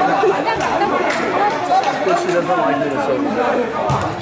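Spectators chattering, many voices talking over one another in a large indoor hall, with one sharp knock just before the end.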